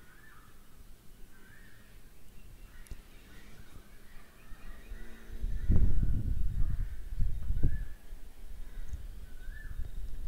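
Crows cawing faintly in short calls, roughly one a second. About halfway through, a louder low rumble with a few thumps comes in and is the loudest sound.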